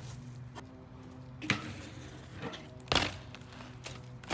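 A few short knocks from a BMX bike being ridden off a concrete ledge, the loudest about three seconds in.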